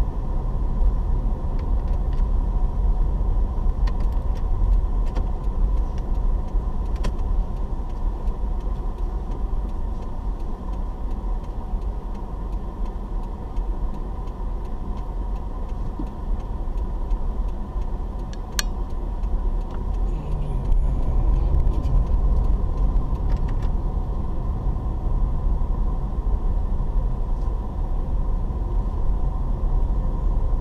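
Car driving, heard from inside the cabin: a steady low engine and road rumble with a few faint clicks, growing a little louder with a faint rising engine note about two-thirds of the way through.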